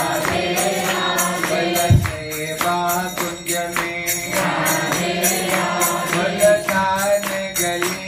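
Kirtan: a man singing a devotional Hindu chant over a steady, quick beat of high jingling percussion, with one low thump about two seconds in.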